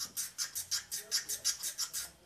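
Steel blade scraped rapidly back and forth on a DMT diamond sharpening plate, about six strokes a second. The coarse diamond is grinding away a rolled-over, dulled edge to get back to a clean bevel.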